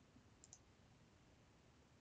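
Near silence with two faint computer mouse clicks close together about half a second in, as a 7-Zip extract command is selected from a right-click menu.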